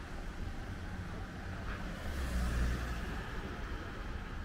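A car driving past, its engine and tyre noise swelling to a peak a little past halfway over a steady low street rumble.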